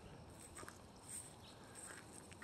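Near silence: faint outdoor background with a few soft, brief ticks and faint high sounds.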